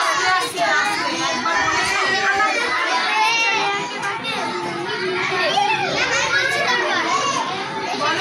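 Several children's voices talking at once, overlapping without a break.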